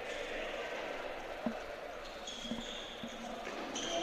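Faint live sound of a floorball game in a sports hall: a few light clicks of sticks and the plastic ball, over a low, even hall murmur.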